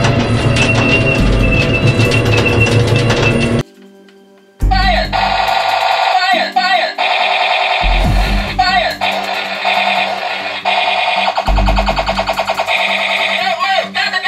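Battery-powered toy tank playing its electronic battle sound effects through its small built-in speaker. A dense, noisy stretch with a steady high tone cuts off, and after a one-second pause a new run of warbling electronic sounds starts. Deep thumps recur every three seconds or so.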